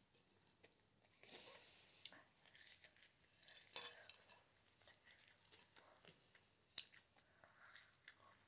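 Faint eating sounds: quiet chewing and light clicks of cutlery on a plate, the sharpest click a little before the end.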